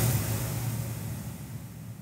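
Logo-transition sound effect: the fading tail of a whoosh and a deep low rumble, dying away steadily.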